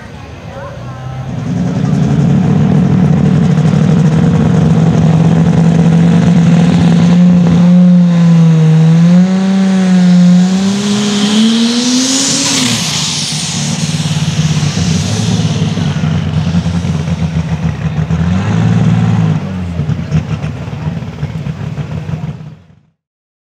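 Light super stock pulling tractor's turbocharged diesel engine running loud under load. Its pitch climbs about ten seconds in, with a high turbo whistle, then falls back, and it rises and drops briefly once more near the end.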